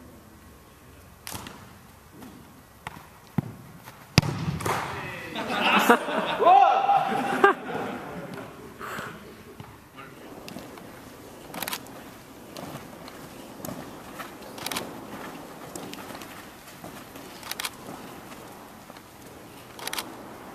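Soccer ball thumping as it is kicked and controlled on indoor turf, in scattered single knocks, the sharpest about four seconds in. Voices shout for a few seconds right after it, then more scattered knocks follow.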